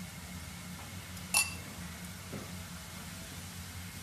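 A metal spoon clinks once against a ceramic dish about a third of the way in, with a short ringing tone, over a steady low hum.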